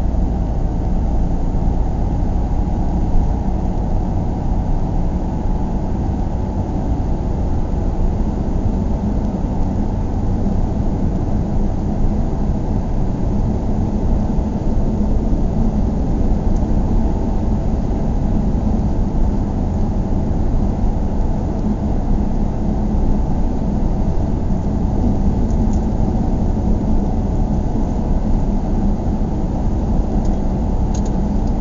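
A car driving: a steady low rumble of engine and road noise that keeps an even level throughout.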